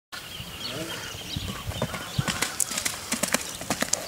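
Hoofbeats of a young Lusitano filly moving loose on arena sand, a quick, irregular run of hoof strikes that starts about halfway through.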